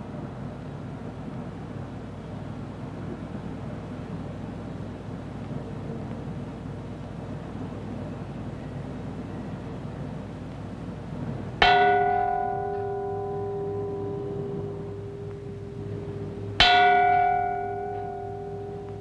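A bronze temple chime plate (kei) is struck twice, about five seconds apart, as a signal in a zazen meditation sitting. Each stroke rings with a clear, bell-like tone that fades slowly, and the second comes while the first is still sounding. Before the first stroke there is only a faint steady background.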